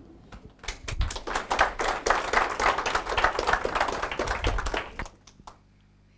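Audience applauding: a dense run of many hand claps that starts about a second in and dies away after about four seconds.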